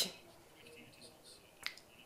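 A pause in speech: quiet room tone broken by a single short, faint click about one and a half seconds in.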